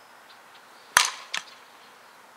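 Softball bat hitting a pitched softball: one sharp crack about a second in, with a brief ring, followed about a third of a second later by a second, fainter crack.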